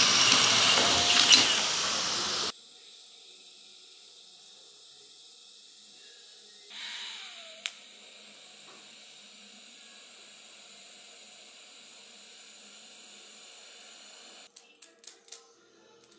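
Cordless drill boring through a stainless steel fuel-tank strap, loud, stopping abruptly after about two and a half seconds. After a short quiet gap, a welding arc hisses steadily and quietly for about seven seconds as the threaded end is plug-welded to the strap, followed by a few light clicks.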